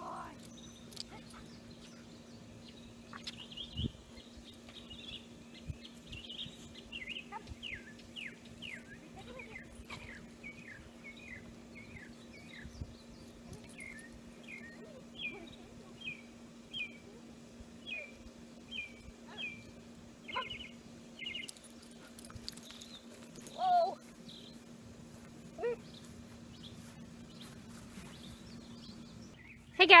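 A songbird singing: several series of short, evenly repeated whistled notes, most sliding down in pitch, each series of a different note, over a faint steady hum. A brief louder sound stands out about 24 seconds in.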